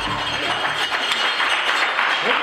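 A live studio audience clapping: a steady patter of many hands.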